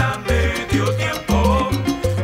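Salsa orchestra playing live, an instrumental passage without vocals: a bass line under melodic lines and percussion keeping the salsa rhythm.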